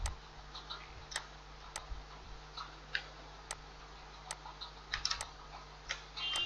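Single clicks from a computer mouse and keyboard, roughly one every half second to second, with a quick cluster of clicks near the end, over a faint steady hum.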